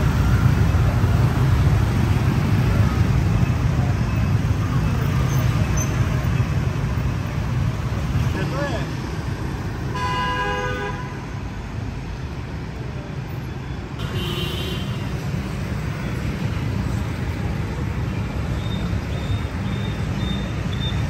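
Dense motorbike and scooter traffic with a steady engine drone. A vehicle horn honks for about a second halfway through, and a shorter, higher honk follows a few seconds later.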